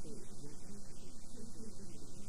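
Steady electrical mains hum with hiss on a cassette-tape recording, with faint traces of a voice beneath it.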